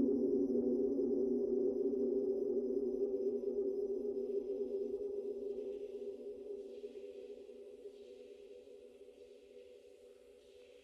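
Ambient electronic music: a held low synth chord that fades out slowly, with faint airy washes above it.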